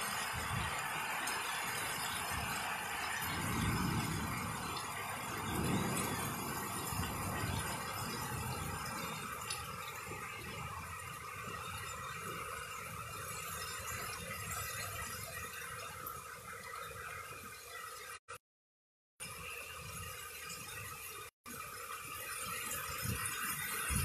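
Heavy rain pouring down in a windy storm, a steady hiss of rain on a flooded street, with low gusts of wind buffeting the microphone about four and six seconds in. The sound cuts out briefly twice past the middle.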